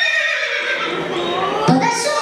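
A horse-like whinny: a high, wavering neigh.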